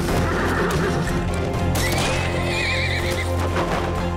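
A horse neighing over dramatic trailer music with a steady low drone. The whinny comes about two seconds in: a high call that rises, then wavers for over a second.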